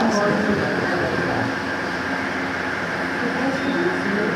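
Indistinct low voices murmuring in a classroom over a continuous steady hum.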